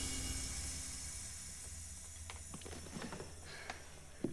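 Low hum of a sci-fi energy machine dying away after a blast, fading steadily, with a few faint clicks and taps in the second half.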